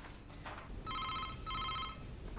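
Mobile phone ringing: two short bursts of an electronic two-tone ring, starting about a second in.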